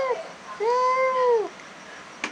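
A cat giving long, drawn-out meows in an upset, yowling way: one call trails off just after the start, then a second call of about a second rises and falls in pitch.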